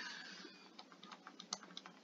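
Faint, irregular clicks and taps of a stylus pen on a tablet screen during handwriting.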